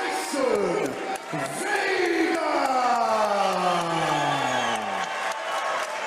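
A ring announcer's long, drawn-out shout, its pitch falling slowly for about four seconds after a shorter call near the start, with a crowd cheering beneath it.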